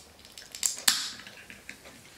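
Ring-pull drink can being opened: a few small clicks as the tab is worked, then a sharp crack about a second in with a brief hiss of escaping gas.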